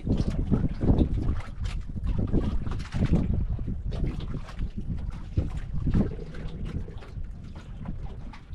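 Wind buffeting the microphone and water lapping against an outrigger boat's hull, as an uneven low rumble with scattered light knocks.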